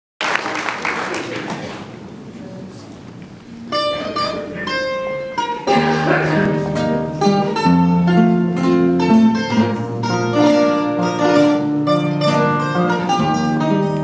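Coimbra guitar and classical guitars playing a fado instrumental introduction. After a few seconds of fading noise at the start, single plucked notes come in about four seconds in, and the full ensemble with bass notes joins about six seconds in.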